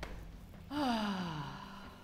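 A woman's voiced sigh, one long out-breath whose pitch falls steadily over nearly a second, starting about three-quarters of a second in.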